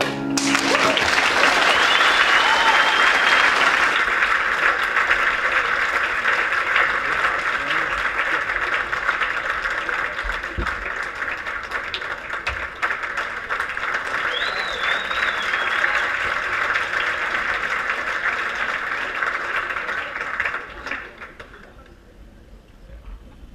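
Audience applauding steadily, with two short whistles from the crowd; the clapping dies away near the end.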